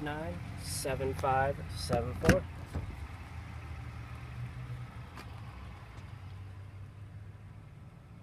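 Low, steady hum of the Highlander's 3.5-litre V6 idling, heard from inside the cabin, with one sharp knock a little over two seconds in.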